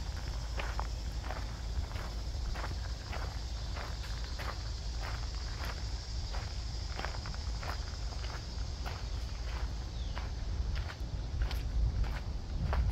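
Footsteps walking at a steady pace, about two steps a second, with a steady high hiss behind.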